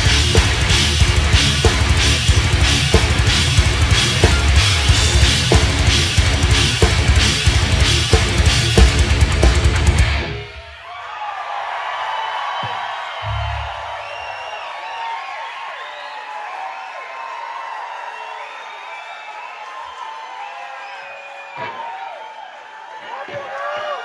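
Loud live heavy rock band, with distorted electric guitars, bass and a pounding drum kit, playing a song to its end and stopping abruptly about ten seconds in. A crowd then cheers, shouts and whistles, with a couple of low thumps from the stage.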